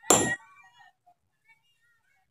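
A single sledgehammer blow on rock, a sharp clank with a short metallic ring that fades within half a second.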